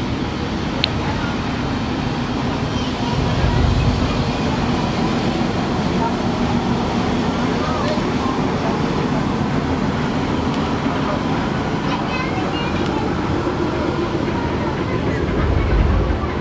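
A multi-deck passenger river launch passing close by: the steady drone of its engines mixed with the wash of water, with two brief low rumbles, about three seconds in and again near the end.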